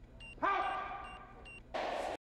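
Control-room console electronics beeping: short high beeps repeating about every half second. A held electronic tone comes in about half a second in and fades. Near the end a short burst of crowd noise cuts in.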